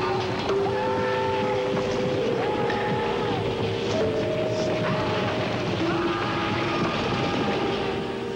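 Steady rumbling, clattering noise of a building collapsing and rubble falling, a TV drama sound effect, with sustained music notes held over it.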